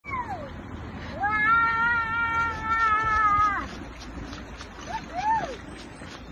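High-pitched, voice-like calls: a short falling call at the start, a long held note of about two seconds that drops away at the end, and a short rising-and-falling call near the end.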